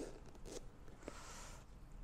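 Zipper of a fabric-covered hard-shell carry case being unzipped, a faint rasp with a few small clicks, loudest about midway.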